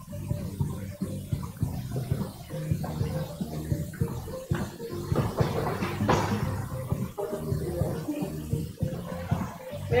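Feet shuffling and scuffing on a foam wrestling mat as two wrestlers grapple, with a heavier thud about six seconds in as one is thrown down onto the mat.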